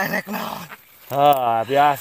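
A man's voice chanting the word "hiburan" over and over in a strained, drawn-out, whining tone. It is hoarse and rough at first, then clearer, wailing syllables follow after a brief pause. This is the trance-like utterance of a man the onlookers take to be possessed.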